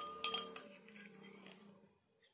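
Metal teaspoon clinking against a stemmed drinking glass: a few quick taps near the start that ring on and fade away.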